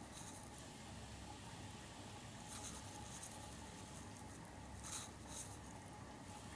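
Faint taps and short strokes of a stylus tip on a tablet's glass screen, in a few brief clusters.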